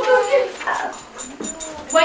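A dog whining, with children's voices mixed in.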